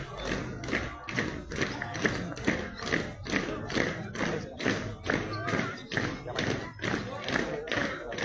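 Marching drums beating a steady, regular cadence, with people's voices underneath.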